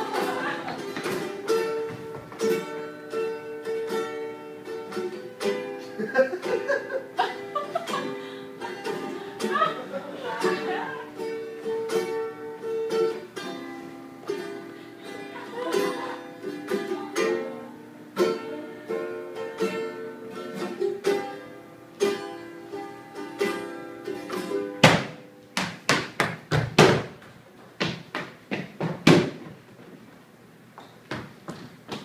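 Live acoustic music from a ukulele and an acoustic guitar, picked and strummed, with frequent knocks and thumps of feet and a soccer ball on a wooden floor. Near the end the music thins out and a run of louder, sharp thumps stands out.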